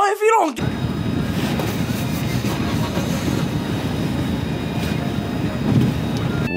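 Steady low rumble and hiss of a car heard from inside the cabin, after a man's voice in the first half second.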